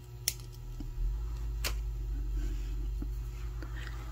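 Small flush cutters snipping off the excess beading wire beside a crimp on a bead strand. There are two sharp clicks, one just after the start and one about a second and a half in, followed by a few fainter ticks.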